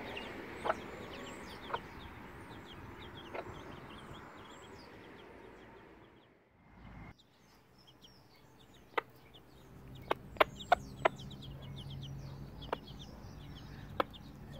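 Week-old Silkie chicks peeping, with many quick, high cheeps, beside their Silkie hen. Sharp clicks sound at intervals, loudest in a quick cluster about ten to eleven seconds in. The sound drops away briefly around six seconds.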